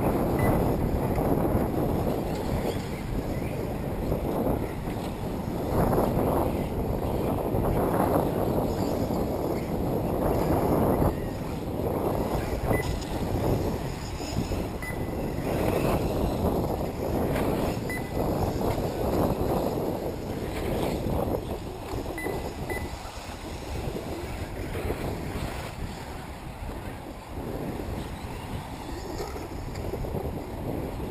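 Wind buffeting the microphone, a rumbling noise that swells and eases in gusts and fades somewhat in the second half, with a few faint short high beeps now and then.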